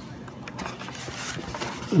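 Cardboard pie box being opened by hand: soft rustling and scraping of the cardboard lid, with a few small clicks.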